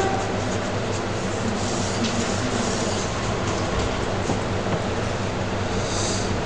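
Steady background hiss with a low electrical hum underneath, even throughout.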